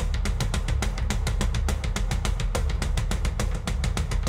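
Instrumental opening of a Celtic folk metal song: rapid, even drumming on a drum kit over a heavy low bass rumble, with no melody yet.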